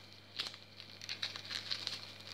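Faint crinkling and a few light clicks of plastic packaging being handled, over a low steady hum.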